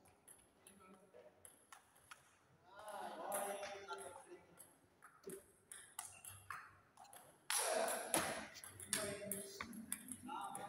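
Table tennis ball clicking off paddles and the table in a rally, a quick series of sharp ticks, with voices talking nearby. The loudest moment is a burst of noise and voice about seven and a half seconds in.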